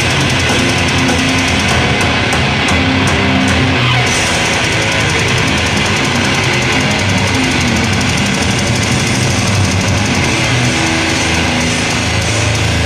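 Black metal band playing live at full volume: distorted guitars, bass and drums in a dense, unbroken wall of sound.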